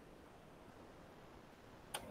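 Near silence with faint background hiss, then a single sharp computer click near the end as the slideshow is closed.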